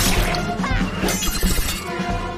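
Cartoon fight sound effects over dramatic music: a shattering crash at the start and another sharp impact about a second in, with a woman's short yelling cries between them.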